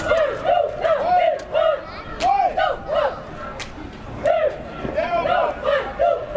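A group of band members shouting a chant in unison: short, loud syllables about three a second, with a brief pause about halfway through.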